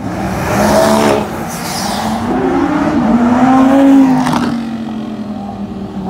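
Sports car engines revving as cars accelerate away one after another: a short rise in pitch about a second in, then a longer climb that is loudest about four seconds in before falling away.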